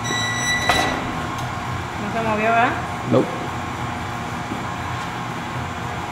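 Screen of a manual screen-printing press being lowered onto the platen: a short high squeak, then a clack before the first second is out. A brief voice about two seconds in and a single knock a second later, over a steady mechanical hum.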